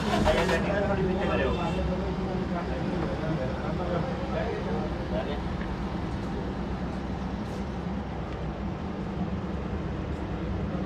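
Workshop background: a steady low machine hum with indistinct voices, the voices loudest in the first two seconds.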